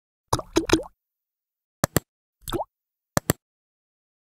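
Short cartoon-style pop and click sound effects from a subscribe-button animation: three quick pops just after the start, then a sharp double click, a brief pop that rises in pitch, and another double click.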